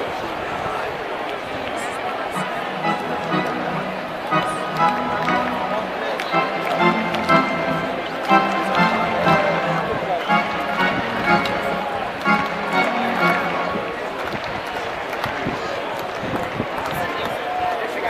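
Ballpark crowd murmur with nearby fans talking, and music from the stadium sound system playing from about two seconds in until about fourteen seconds.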